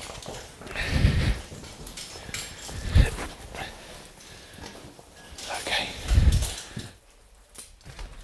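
A person clambering over rock in a narrow mine passage: boots scuffing and knocking on stone, clothing and climbing gear rustling, and effortful breathing, with three heavier thuds.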